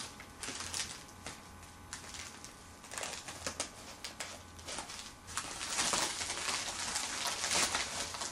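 Scissors snipping through a plastic mailer bag, with the plastic crinkling and rustling as it is cut and pulled open. The sound is a run of short, irregular snips and rustles, busier in the second half.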